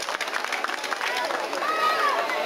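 Outdoor audience at the end of a dance: many voices talking and calling out, with scattered clapping dying away early on and a high voice calling out near the end.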